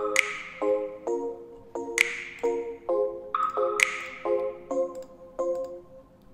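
Playback of a home-produced electronic pop track: short chords on a bell-like keys sound, about two a second, with a bright, hissing hit about every two seconds. There is no bass or drums under it.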